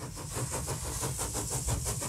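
Mechanical running noise: a low rumble with a fast, even rattle of about ten beats a second, growing louder.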